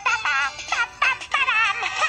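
A cartoon song playing from a TV: short sung phrases, high and wavering in pitch, over music, heard through the TV's speaker.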